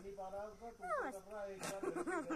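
Wordless human voice sounds: a steady held tone with a higher sliding, whimper-like call about a second in.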